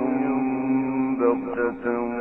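A male reciter chanting the Quran in the melodic tajweed style, holding one long drawn-out note with a short melodic turn partway through. The recording is old and sounds thin.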